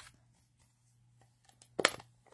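Mostly quiet room with a faint steady low hum, then one brief scuff of paper near the end as cardstock is handled on the craft mat.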